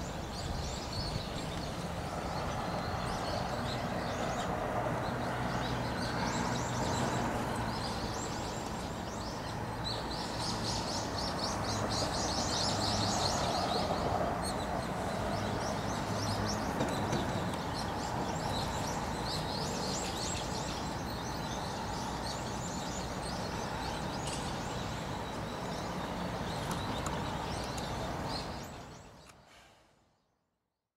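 Birds chirping in rapid high series over a steady low city hum, with a dense run of quick chirps about ten to fourteen seconds in. The sound fades out near the end.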